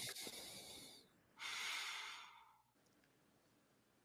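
A person breathing out audibly into a microphone: a fading breathy hiss at the start, then one longer exhale about a second and a half in.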